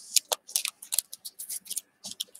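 Stack of cardboard baseball cards flipped through by hand: a quick run of dry clicks and short slides as the card edges snap past one another, mostly high in pitch.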